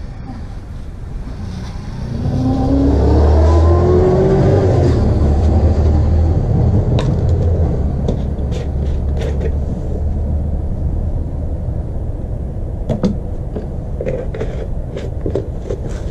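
A low engine rumble that rises in pitch between about two and five seconds in, then runs on steadily, with a few light clicks and knocks later on.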